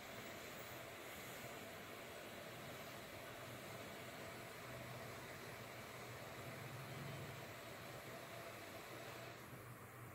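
Quiet room tone: a faint, steady hiss with a low hum underneath and no distinct sounds.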